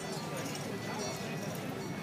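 Indistinct voices of people talking, with footsteps on stone paving.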